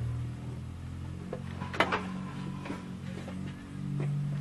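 A vehicle engine running at idle as a steady low hum, with a sharp knock about two seconds in and a few lighter clicks around it.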